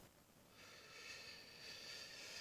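Near silence with a faint breathy hiss, a person breathing out, starting about half a second in and lasting to the end.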